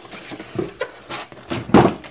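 A plastic packaging tray and cardboard box being handled as it is lifted out: three short scrapes and rustles, the loudest near the end.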